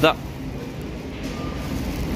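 Steady low hum of a supermarket's background noise, after a short spoken word at the start.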